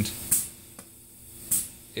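Two short hisses of air from an EFD pneumatic solder paste dispenser, about a second apart, as the push-button fires its air pulse into the syringe.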